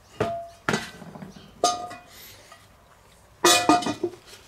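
A cast-iron Dutch oven lid knocking and clinking against the cast-iron pot as it is handled and set on. There are a few separate clanks, each with a short metallic ring, and a louder cluster of clanks near the end.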